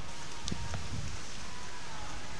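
Steady wind and surf hiss with one sharp knock about half a second in: a beach tennis paddle striking the ball.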